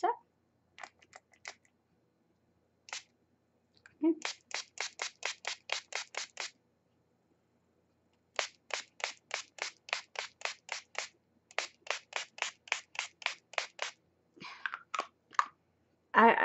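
Hard Candy Sheer Envy matte setting spray mister pumped in three quick runs of short sprays, about four to five a second, with a few faint clicks before and a few weaker sprays near the end.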